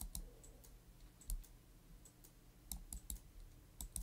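Faint, irregular clicks of a computer mouse and keyboard keys, about a dozen in all, over a low steady hum.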